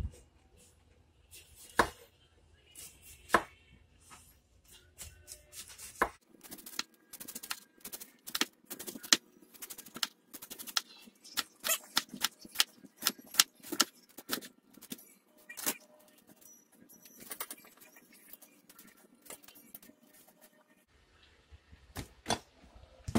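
Chef's knife slicing a head of cabbage against a wooden cutting board: a few single cuts at first, then a quick run of knife strikes on the board for about ten seconds, thinning out toward the end.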